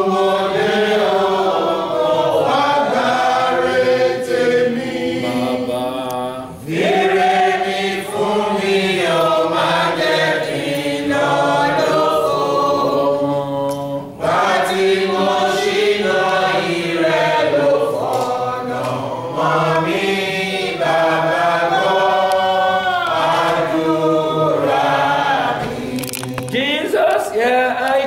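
A congregation singing together in a group of mixed voices, in long phrases with brief breaks about six and a half and fourteen seconds in.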